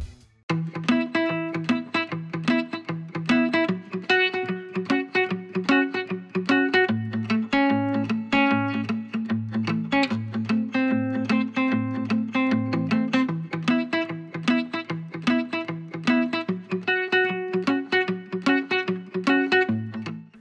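Background music: guitar playing a steady run of plucked notes over low bass notes, starting about half a second in.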